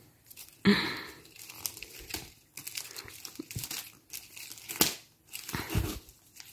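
Gift-wrapping paper crinkling and rustling in irregular crackles as a wrapped present is handled, with a short cough about a second in.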